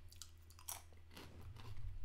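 Someone chewing a crunchy snack close to the microphone: a few faint, irregular crunches.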